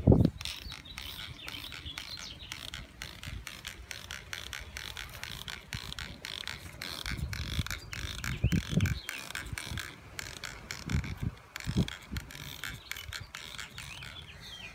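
A hand trigger spray bottle squeezed over and over, each squeeze giving a short spritz with a click of the trigger. A few low thumps come in between.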